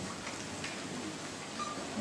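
A pause in speech: faint, steady room noise of a hall heard through the microphone, with no clear sound event.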